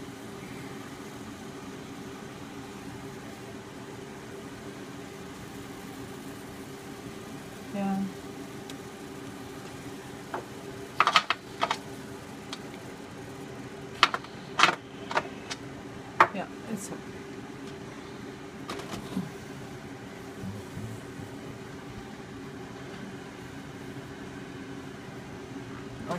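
Sharp metal clicks and knocks from a stovetop pressure canner's lid, handles and vent being worked, clustered in the middle of the stretch, over a steady low hum. The canner has just come down to zero pressure and its lid is not yet ready to open.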